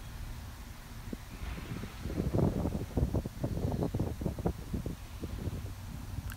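Irregular low rumble and rustle of wind and handling noise on a handheld camera's microphone as the camera is moved, starting about two seconds in and easing off near the end.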